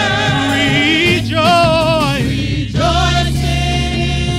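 Gospel choir singing held notes with vibrato over a steady low instrumental accompaniment, in phrases that break off briefly twice.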